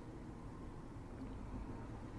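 Faint, steady low hum and hiss of room tone, with no distinct sound in it.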